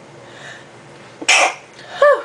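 A woman coughs once, a short sharp cough about a second and a quarter in.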